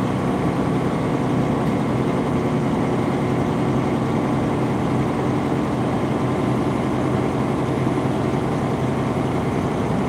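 Semi truck's diesel engine running steadily at highway speed, heard from inside the cab along with a steady rush of tyre and road noise.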